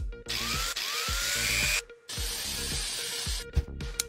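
Electric drill spinning copper wires held in its chuck, twisting them together. It runs in two spells with a short stop at about two seconds, and the motor whine rises as it speeds up at the start.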